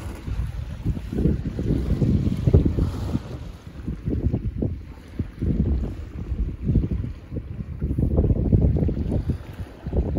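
Wind buffeting a phone microphone in uneven gusts on a moving boat, over water washing past the hull.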